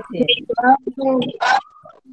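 Children's voices over a video call, short choppy syllables as they call out an answer.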